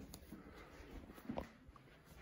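Almost quiet room with faint shuffling of socked feet on carpet, and one brief faint sound a little past the middle.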